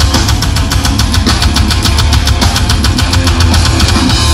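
Hardcore metal band playing live and loud: distorted electric guitar over very fast, even drumming at about ten hits a second.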